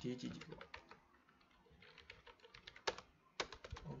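Typing on a computer keyboard: scattered key clicks, one sharp keystroke a little before three seconds in, then a quick run of keys just after.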